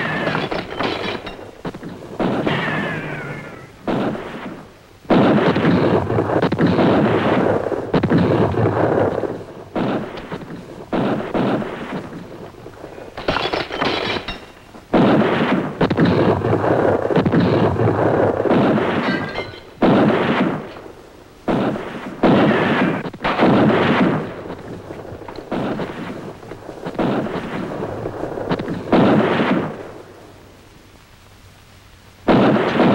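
Sustained gunfight: volleys of rifle and pistol shots, many overlapping, each trailing off in a long echo. The shots come in bursts every second or two, with short lulls between.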